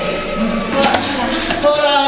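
Indistinct voices of people on a staircase, with a few knocks of footsteps on the steps.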